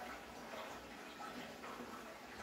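Faint, steady water noise from a large aquarium's running pumps and aeration, with a few faint small ticks.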